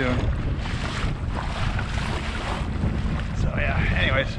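Strong wind buffeting the microphone, heavy and gusty, over choppy water splashing against the hull of a motorized fishing kayak heading into whitecapping waves.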